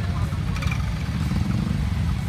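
Several motorcycle engines running at low revs in a packed, crawling traffic jam, a steady low rumble with people's voices mixed in.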